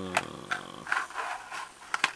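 Small cardboard toy box being handled and its clear plastic blister tray pulled out: a handful of sharp, irregular clicks and scrapes of card and plastic.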